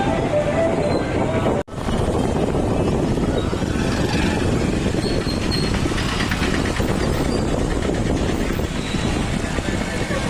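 Steady rumbling background noise, with a brief dropout about one and a half seconds in.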